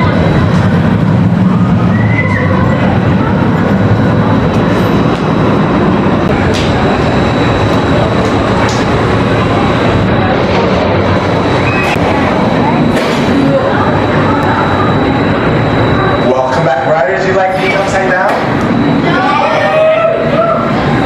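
Steel roller coaster train running along its track, a loud steady rolling noise, with riders' voices and a laugh over it. Near the end voices stand out as the train comes into the station.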